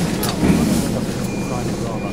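A voice talking over the steady low hum of the Mercedes Sprinter's engine idling, heard from inside the cab.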